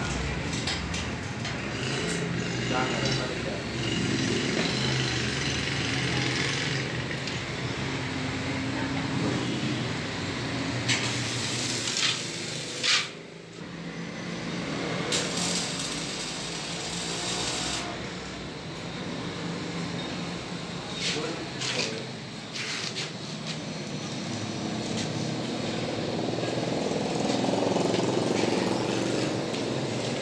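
Electric arc welding on steel, a steady crackle and hiss that breaks off briefly a couple of times, with men talking over it.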